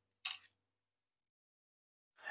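Near silence, with one short click about a quarter of a second in from a felt-tip pen being handled.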